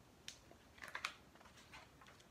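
Pages of a picture book being turned by hand: a few faint paper rustles and flicks, the loudest about a second in.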